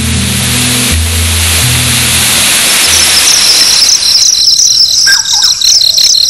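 Loud rushing waterfall with a few low, held music notes under it; the water fades out about four seconds in. A high, steady insect chorus rises from about three seconds in, with birds chirping near the end.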